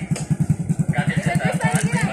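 Small single-cylinder motorcycle engine idling with a steady, rapid low putter of about a dozen beats a second.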